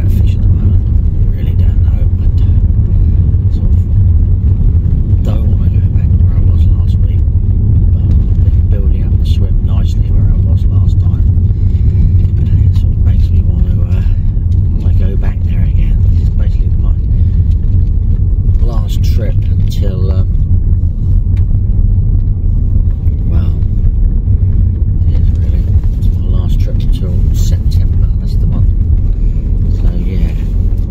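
Car being driven, heard from inside the cabin: a steady, loud low rumble of engine and road noise.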